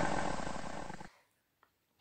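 The tail of a recorded lion roar, a low breathy rumble that fades away over about the first second and then cuts to silence.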